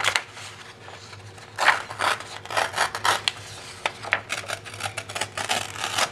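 A sheet of plain copier paper being torn by hand in a series of short, irregular rips, starting about one and a half seconds in.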